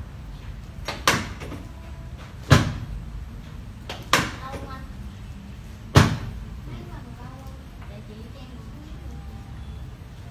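Four sharp knocks from a padded treatment table as hands thrust down on a patient's lower back during spinal manipulation, about one and a half seconds apart; the second and fourth are the loudest.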